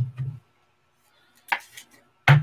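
A single short, sharp tap about one and a half seconds in, from trading cards being handled and set down on a tabletop.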